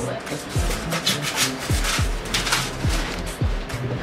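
Rigid foam insulation board squeaking and rubbing as it is pushed into a metal wall channel, over background music with a steady beat.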